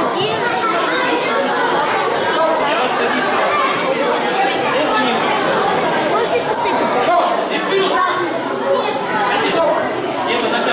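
Many people talking at once in a large hall: a steady wash of overlapping chatter with no single voice standing out.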